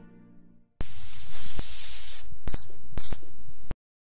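A held brass chord fades out, then a burst of loud hissing static with a few sharp crackles runs for about three seconds and cuts off abruptly near the end: an old-television static sound effect.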